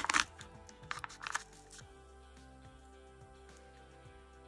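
Several sharp cracks and clicks in the first second and a half as a new, still-sealed plastic jar of clear acrylic powder is opened. After that only faint background music with held notes.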